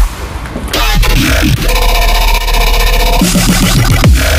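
Background electronic music with heavy bass: a brief break right at the start, then falling bass sweeps and a held synth chord in the middle.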